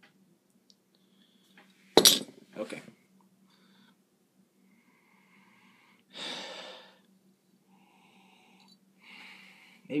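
A glass beer bottle set down on a table with a sharp knock about two seconds in and a lighter knock just after. Then two sniffs at a glass of pale ale, about six seconds in and a fainter one near the end, over a faint steady hum.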